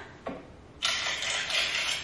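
Plastic crinkling and rustling as hands handle snack bags and clear plastic organiser bins. It starts suddenly about a second in and runs on steadily.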